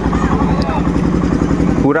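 A small engine running steadily with a fast, even pulse, with faint voices in the background.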